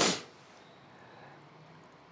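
A man's spoken word ending in a brief hiss at the very start, then quiet room tone.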